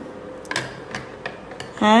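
A handful of light clicks of a metal spoon against the chutney bowl and plate as mint chutney is spooned onto puris.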